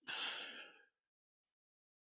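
A man's short sigh, one breath out lasting under a second.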